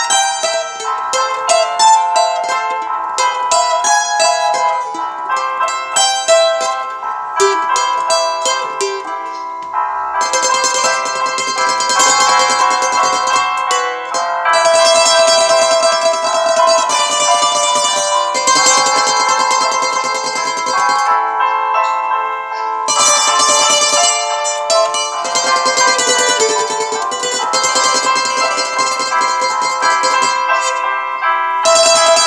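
A small many-stringed plucked instrument playing a solo instrumental melody. For the first ten seconds or so the notes are picked one at a time, then the playing turns denser and faster, with a few short pauses between phrases.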